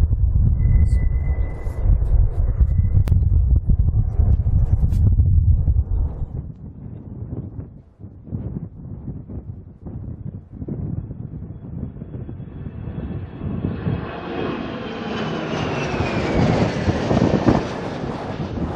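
Twin turbofans of an Irkut MC-21-300 airliner (Pratt & Whitney PW1400G) in flight. A low rumble of the jet climbing away, with wind on the microphone, fades about six seconds in. From about twelve seconds in, engine noise builds to a peak near the end as the jet passes low, with a whine that falls in pitch.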